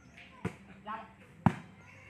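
A volleyball struck twice by players' bare feet or legs: two sharp thuds about a second apart, the second louder.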